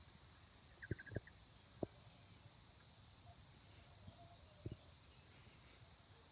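Near silence: faint outdoor background with a few soft taps and a brief, faint run of quick high chirps about a second in.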